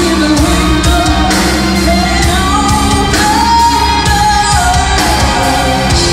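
Live doom metal band playing: a woman's lead vocal sung over distorted electric guitars, bass, keyboards and drums, with a long held sung note in the middle.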